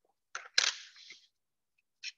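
A metal-cased Lucas relay being picked up off a tabletop: a light click, then a sharper, louder clack and a brief scrape about half a second in.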